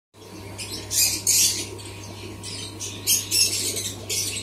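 Harsh bird squawks in short, irregular bursts, loudest about a second in and again around three seconds, over the steady low hum of an aquarium air pump.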